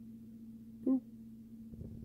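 A man sings a single short 'do' about a second in, over a faint steady low hum.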